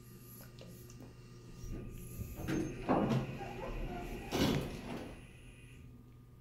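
Stainless-steel doors of a 1990 Dover hydraulic elevator sliding open at a landing, with two louder rushes of door noise about three and four and a half seconds in over a steady low hum.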